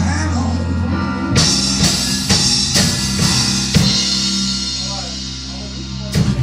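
Live rock 'n' roll band of electric bass, drum kit and piano ending a number: a held chord over a low bass note, with drum and cymbal hits about twice a second starting about a second in, the sound dying away near the end.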